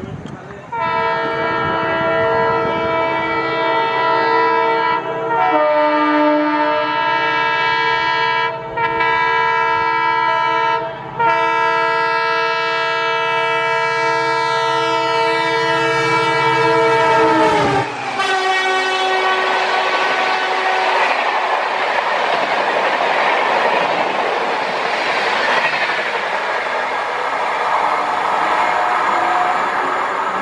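Indian Railways electric locomotive's multi-tone horn sounding long and loud as the train approaches at speed, broken by three short gaps. Its pitch drops sharply as it passes a little over halfway in. Then comes the loud rushing and wheel clatter of its LHB coaches going by.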